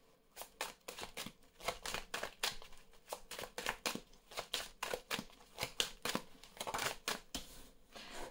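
Tarot cards being handled and drawn from the deck: a run of short papery clicks and rustles, a few a second, at irregular spacing.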